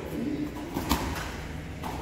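Two sharp snaps, about a second apart, from karate techniques in a large hall, likely the cotton sleeves of a karate gi cracking as arms are thrust out.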